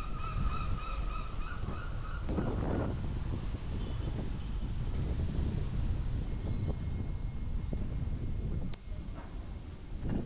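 Wind rumbling on the microphone of a camera carried on a moving bicycle, with a steady high whine for about the first two seconds and a short call-like sound a little later.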